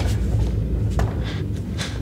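A few short knocks and shuffles as a person comes down from a pike hold with his feet on a plyo box and steps onto the floor, over a steady low rumble.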